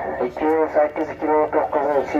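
Speech: a person talking steadily.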